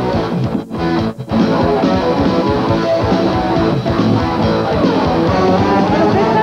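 Instrumental passage from a live folk-rock band: electric guitar, bass, drum kit and keyboards. The band stops short twice about a second in, then plays on.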